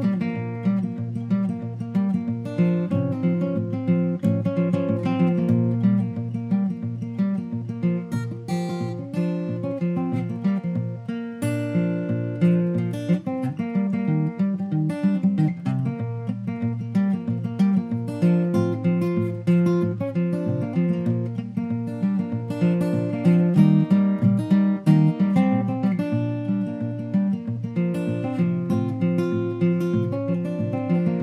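Acoustic guitar strumming chords in a steady rhythm, an instrumental passage with no singing.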